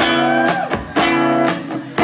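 Live rock band playing: strummed electric guitar chords over a steady beat, with a strike about once a second.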